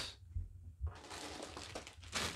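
Clear plastic parts bag crinkling as it is picked up and handled. The crinkling starts about a second in, after a couple of soft low thumps.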